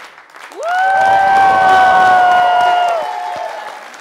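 Studio audience applauding and cheering, with one long high-pitched shout that rises about half a second in and then holds steady for about three seconds.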